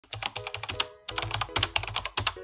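Computer keyboard typing sound effect: rapid key clicks in two runs with a short break about a second in, timed to a caption being typed out on screen.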